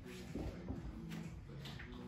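Faint rustling and shuffling of a person lowering herself from hands and knees to lie face down on a wooden floor.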